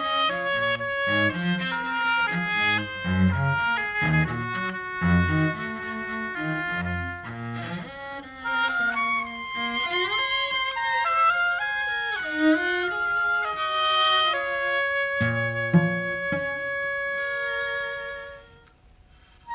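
Chamber music: an oboe plays a melody over short, detached notes from a lower instrument, ending on a long held note.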